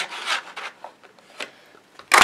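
Cardstock sliding and rubbing in the slot of a plastic craft circle punch as the paper is lined up, with a few light taps from handling the punch.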